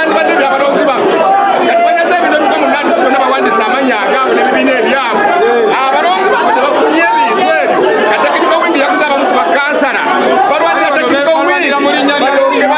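Speech only: a man talking loudly and excitedly, with several other voices talking over him at the same time.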